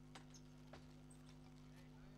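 Near silence: a steady low hum with a few faint clicks.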